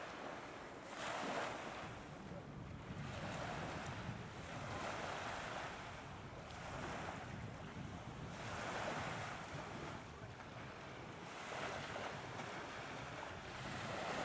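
Small sea waves washing onto a beach, the surf swelling and falling back about every two seconds.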